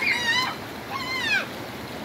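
Two short high-pitched cries, each rising then falling in pitch, about a second apart, over a steady background hiss.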